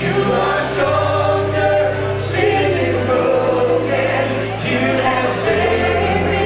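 Live contemporary worship band playing a song, several singers singing together in harmony over the band. Held bass notes underneath change pitch every couple of seconds.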